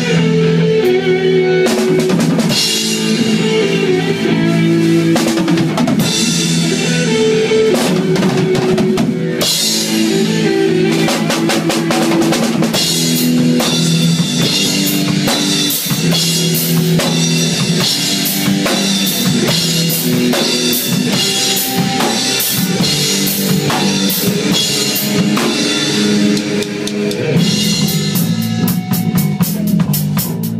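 Rock band playing live, with no vocals. A drum kit with kick drum and cymbals drives under electric guitar and bass guitar riffs. The drum hits come quicker near the end.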